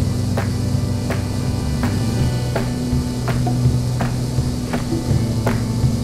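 Steady low drone of a Beechcraft A36 Bonanza's piston engine in cruise, heard in the cockpit, with faint clicks about every half second to second.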